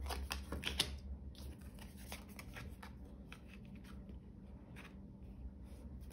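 Tarot cards being handled and laid down on a table: a few soft card clicks and rustles in the first second, then fainter shuffling and sliding.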